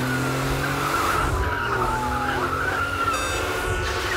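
Car tyres squealing steadily under hard driving, over the low, steady running of engines, with a second shorter tone sliding down in pitch about halfway through.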